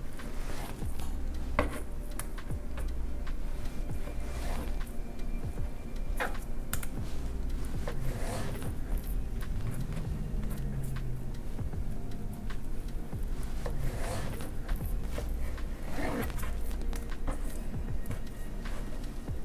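Background music, with a knife slicing raw salmon into strips and knocking on the cutting board in a few scattered strokes.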